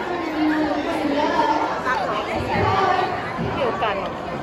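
Background chatter: several people talking indistinctly in a large, busy indoor space.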